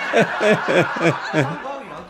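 A man chuckling, a run of short repeated laughs.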